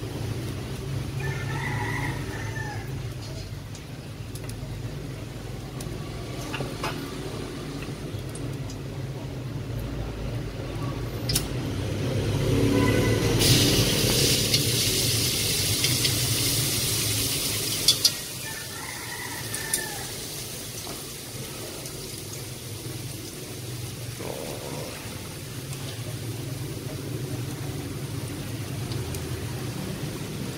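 Minced garlic sizzling in hot cooking oil in a steel wok. A loud hissing spell comes about midway and stops suddenly after a few seconds, with fainter frying while it is stirred with chopsticks, over a steady low hum.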